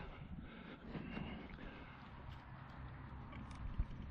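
Footsteps on dry grass with a low rumble of wind on the microphone, then a few soft clicks and a knock near the end as a solar spotlight's stake is pushed into the ground.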